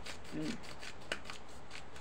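Handheld spice grinder being twisted, giving an irregular run of quick, dry crackling clicks.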